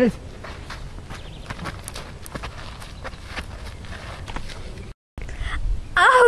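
Footsteps on sandy, gravelly ground, a few irregular steps a second, over a low rumble. The sound cuts out completely for a moment about five seconds in.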